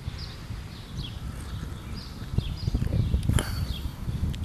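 A man sipping beer from a pint glass, with soft mouth and swallowing sounds and a few small clicks, the loudest about three and a half seconds in, over a low rumble.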